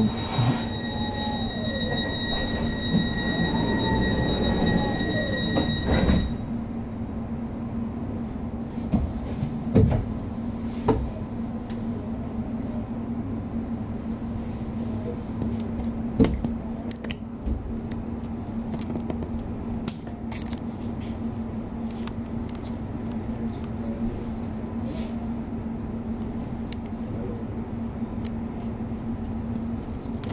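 Inside a class 484 S-Bahn train standing at a station: the train's equipment gives a steady low electrical hum. For the first six seconds higher whining tones sound over it and then cut off suddenly, and scattered clicks and knocks follow.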